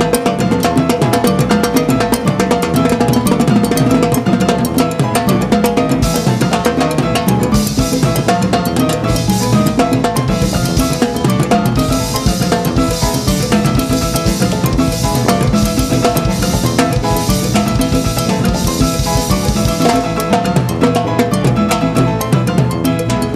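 Live timbal and drum-kit solo with rapid stick strokes on drums and rims, and the bass drum underneath. From about six seconds in to about twenty seconds, repeated cymbal hits ring over the drumming.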